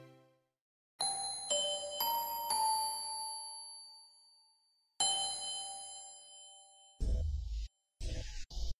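Bell-like chime notes: four struck notes half a second apart, a second in, each ringing and fading over a few seconds, then another chord struck about five seconds in. Near the end comes a short burst of low rumbling noise that cuts off abruptly.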